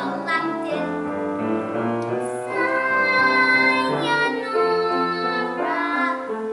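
A young girl singing a solo show tune with piano accompaniment, holding one long note about halfway through.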